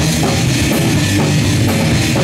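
Live punk rock band playing: distorted electric guitars over a drum kit beating fast and steady, about four strokes a second.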